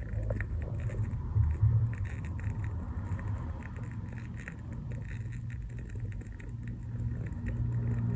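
Wooden-wick candle burning with a faint, irregular crackle of small ticks, over a low steady hum.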